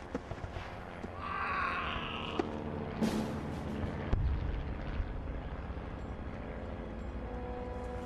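Battle sound effects: a steady low rumble with a few sharp bangs, like distant gunfire and explosions, the clearest about three seconds in. A faint held music tone comes in near the end.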